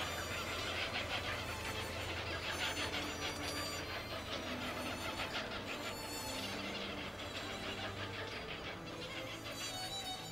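Squealing calls of nestlings at a waterbird breeding colony, a dense rapid chatter that is strongest in the first half, heard over background music with a low sustained drone.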